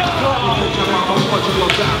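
Crowded indoor skatepark: overlapping voices and background music, with one sharp knock near the end.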